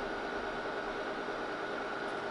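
Steady hiss and hum of running electronic test equipment, with a faint, steady high-pitched whine.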